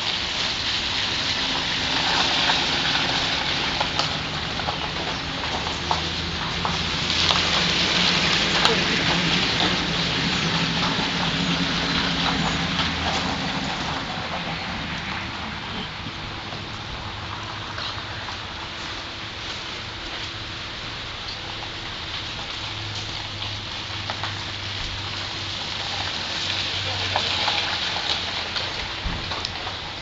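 Steady rain falling, a continuous hiss that swells and eases a little, with faint voices and a low hum underneath.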